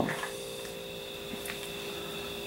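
A pause in the talk: faint room tone with a steady electrical hum.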